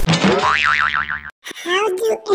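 Cartoon 'boing' sound effect: a quick rising sweep that turns into a fast wobbling warble and cuts off a little over a second in. About a second and a half in, a voice-like sound starts.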